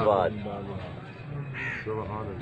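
A crow cawing once, briefly, near the end, after a man's amplified voice fades out at the start.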